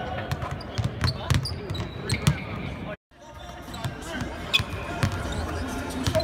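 Several basketballs bouncing on a hardwood court in a large, echoing, mostly empty arena, with voices talking in the background. The sound cuts out briefly about halfway, then the bouncing picks up again.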